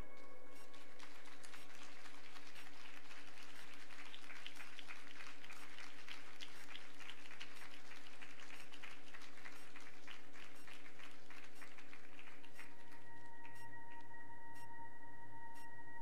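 Audience applause over a sustained ambient drone from keyboard and electric guitar. The clapping starts about a second in and dies away near the end, leaving the steady drone, which moves to new notes.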